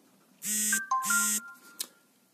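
Two short electronic buzzes about half a second apart, each with a steady low pitch, with a few clear ringing tones sounding under and just after them.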